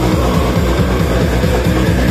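Death metal band playing loud and fast live: distorted guitars, bass and drums, heard from among the crowd.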